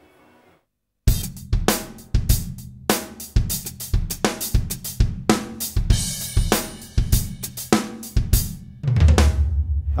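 Korg Krome workstation's sampled Jazz Dry/Ambience drum kit played from the keys, with the close-mic and overhead-mic sounds blended together. A rapid pattern of drum and cymbal hits starts about a second in, and a low ringing drum sustains near the end.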